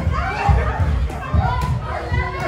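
Children's high voices calling out and chattering in the hall, over low irregular thumps.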